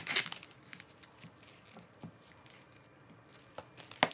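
Crinkling, crackling handling sounds, loudest in the first half-second, then a few faint scattered clicks and taps.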